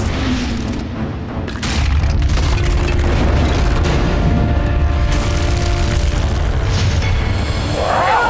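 Horror-trailer sound design: a deep, sustained booming rumble over dramatic music, swelling sharply about two seconds in and holding loud, with a few sharp hits along the way.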